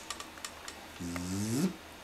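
Faint clicks and rustling as a baby's cloth bib is undone and pulled off. About a second in, a man's voice draws out a long, rising "zip".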